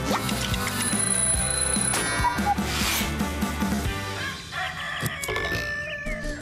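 Short TV show jingle music with added sound effects: a quick sweep at the start, a swish about three seconds in, and a few sharp clicks near the end.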